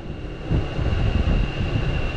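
Wind buffeting the microphone: a gusty low rumble with a thin, steady high tone running through it.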